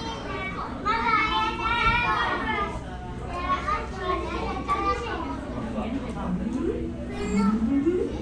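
Visitors talking, with a young child's high voice loudest about a second in and a man's voice near the end.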